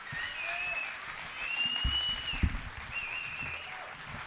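Concert audience applauding, with several long high whistles from the crowd and a couple of dull thumps about midway.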